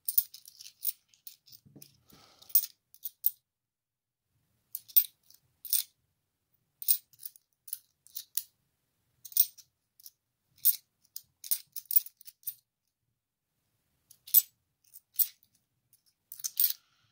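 Cupro-nickel 50p coins clicking against one another as they are thumbed off a stack in the hand: sharp, irregular clicks coming in little clusters, with two short pauses.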